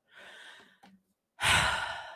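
A woman's exasperated sigh: a soft breath in, then about a second and a half in a loud breathy exhale that trails away.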